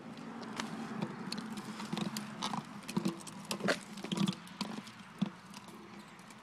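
Irregular clinks, knocks and short creaks from a fallen tire swing's rusty chains and fittings as the swing keeps moving near the ground.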